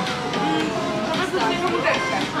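Several people chatting close by over background music.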